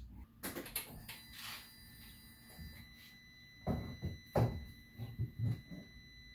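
Several dull thunks, the loudest a little past halfway, over a faint, steady high-pitched tone that sets in about a second in.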